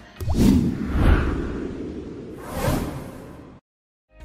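Whoosh sound effects of an animated logo sting: a swoosh about a third of a second in, another near one second and a third around two and a half seconds, dying away shortly before the end.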